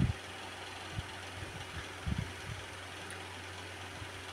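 Steady low hum under faint background noise, with a few soft low knocks.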